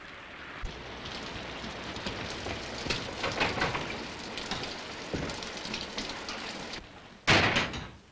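Steady rain falling, with a loud door bang near the end.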